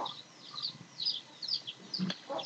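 Background bird calls: a run of short, high chirps repeating about three or four times a second.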